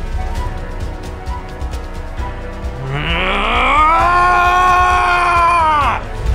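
Background music. In the second half a single long cry starts low, rises over about a second, and is held at one pitch for about two seconds before dropping off.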